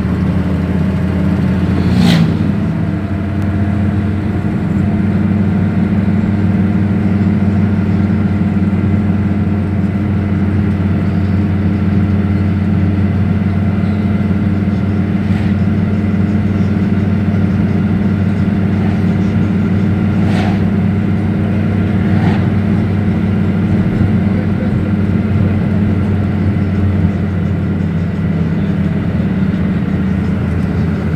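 Steady low drone of a moving train heard from inside a passenger carriage, with a few brief clicks scattered through it.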